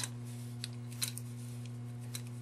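Jute twine being wound by hand around a wax pillar candle: a few faint clicks and rustles as the twine and fingers move over the candle. A steady low hum sits underneath.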